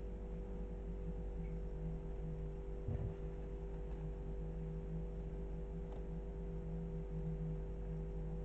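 A steady low hum with a wavering low tone over it, and one soft thump about three seconds in.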